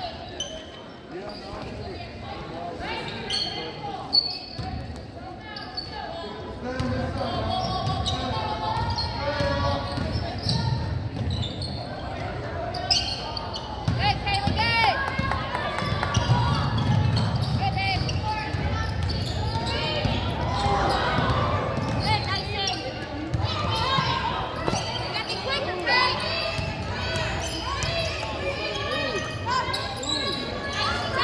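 A basketball is dribbled on a hardwood gym floor during play, in short repeated bounces, with players' and spectators' voices calling out indistinctly in the gym.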